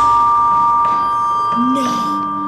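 Steam locomotive whistle sounding one long, steady two-note chord: the ghost engine's eerie whistle.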